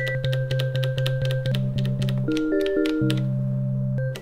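Elektron Digitone FM synthesizer playing a sustained low note with higher held tones over a steady clicking pulse about three times a second. The timbre and pitches shift about a second and a half in and again after two seconds as its FM algorithm is switched.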